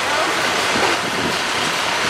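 Steady outdoor street noise with people talking nearby, a continuous hiss of background sound under scattered voices.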